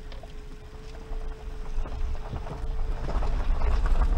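Suzuki Jimny Sierra JB43 driving on a gravel forest track, heard from inside the cabin: a steady low rumble of engine and tyres with scattered small ticks and rattles from the gravel. A thin steady tone drops out about three seconds in, and the rumble grows louder toward the end.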